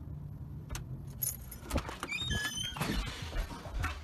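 A bunch of keys jangling and clicking as they are worked slowly into a door lock, with a cluster of light metallic tinkles and clicks in the middle second or so. A low steady rumble runs underneath.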